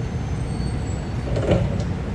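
Low, steady rumble of road traffic, with a brief knock about one and a half seconds in.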